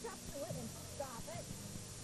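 Young children giving short, high-pitched wordless calls while kicking a rubber ball about, with soft knocks of feet and ball on the studio floor. A steady low hum from worn VHS audio runs underneath.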